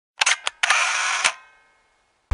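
Three quick sharp clicks, then a short mechanical whirr that ends in a click.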